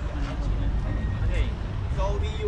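Several people talking in a crowd of tourists, over a steady low rumble.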